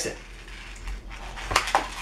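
Latex twisting balloon being handled and knotted between the fingers: quiet rubbing, then a few short sharp clicks about one and a half seconds in.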